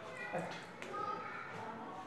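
Whiteboard marker drawn across the board: a couple of light clicks, then a thin squeak about halfway through.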